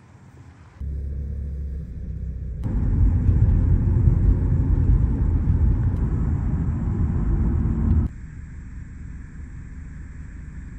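Road and engine rumble inside a moving car's cabin, a steady low noise. It comes in short edited clips that cut in abruptly about a second in, get louder from about two and a half seconds, and drop back sharply at about eight seconds.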